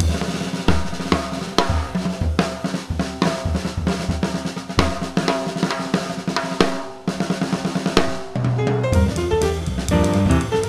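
Jazz drum solo on a Yamaha drum kit: bass drum, snare, toms and cymbals struck in quick figures. A little after eight seconds in, the upright bass and piano come back in under the drums as the trio resumes.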